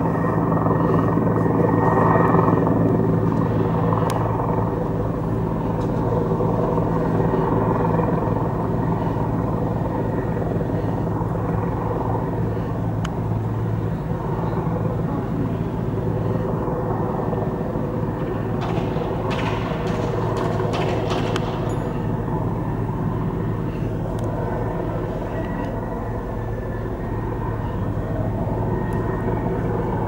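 A steady engine drone that holds one unchanging pitch throughout. About two-thirds of the way through, a short cluster of sharp clicks or knocks sounds over it.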